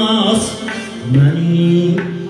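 Uzbek Khorezm folk ensemble playing: doira frame drum, Weltmeister accordion and a long-necked plucked lute, with a man singing at the microphone. A low note is held through the second half.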